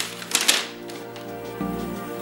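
Sheet of paper being unfolded by hand, a few crisp rustles in the first half-second, over background music holding sustained notes.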